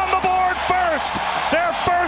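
Hockey arena crowd cheering and yelling at a home-team goal, with voices shouting over one another and a few sharp knocks mixed in.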